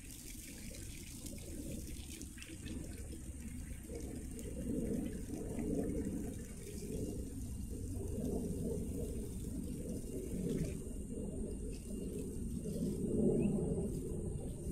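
Water running from a garden hose and splashing onto soil and plants, steady with some rise and fall.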